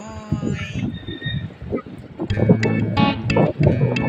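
Background music; a steady beat comes in about two seconds in.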